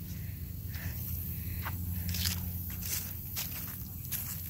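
Footsteps squelching through waterlogged, flooded lawn grass, several steps in turn, over a low steady rumble.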